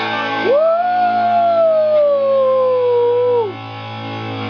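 Electric guitar rock music stops about half a second in. One long note scoops up, holds while slowly sagging in pitch, and drops away near the end, over a steady low amplifier hum.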